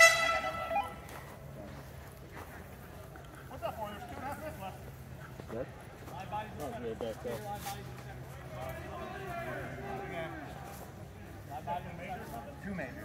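A horn sounds once, a single blast of just under a second at the start, signalling the end of the paintball point as the flag is taken. Faint, distant voices follow.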